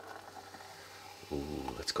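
Carbonated cola poured from a plastic bottle into a glass, a faint splashing stream and fizz as foam builds in the glass.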